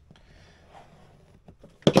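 Faint handling of a cardboard box, then two sharp clicks close together near the end from a pair of pliers used to cut the box's seal.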